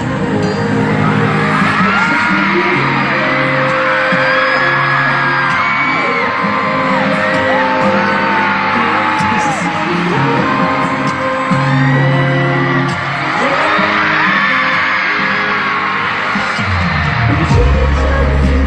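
Loud live K-pop stadium concert, the sung melody and backing track heard through the crowd's whoops and screams, with a heavy bass coming in near the end.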